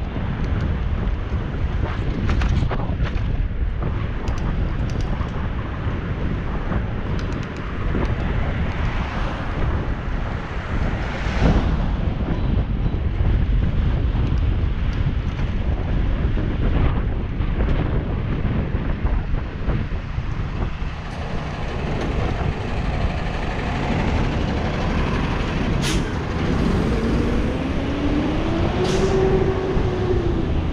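Steady wind rumble on a handlebar- or helmet-mounted action camera's microphone while cycling, mixed with road traffic. Near the end a vehicle's engine rises in pitch over a few seconds as it accelerates, then levels off.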